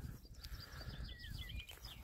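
A small bird singing: a quick run of short high chirps, with a brief falling whistle in the middle.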